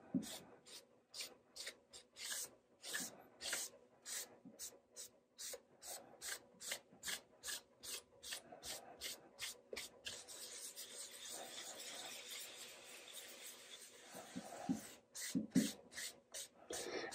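Paper shop towel rubbed back and forth over the wooden top of a guitar body, wiping on alcohol-based dye: faint, even strokes about two a second, becoming one continuous rub about ten seconds in, then a few more strokes near the end.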